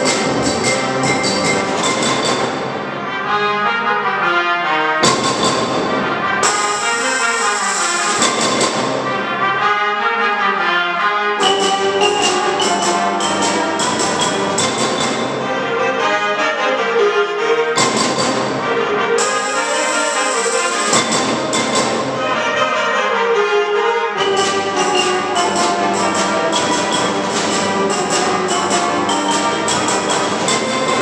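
Concert band playing a loud, brass-heavy passage, with trumpets, trombones and tuba over percussion. The texture changes abruptly every five or six seconds.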